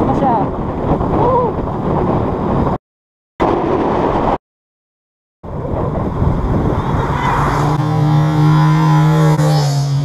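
Motorcycle riding sounds from a helmet camera: wind rushing over the microphone with the single-cylinder four-stroke engine of a Suzuki Smash 115 underbone running underneath. The sound breaks off twice into brief silence. In the last couple of seconds a steady low engine drone stands out.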